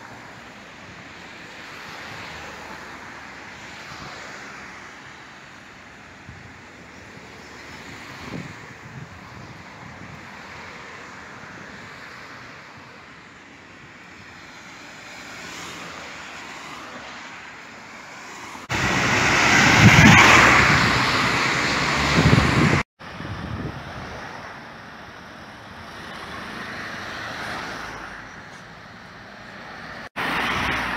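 Road traffic on a wet road: a steady hiss of tyres that swells and fades as cars pass. Past the middle, a much louder stretch of about four seconds starts and stops abruptly.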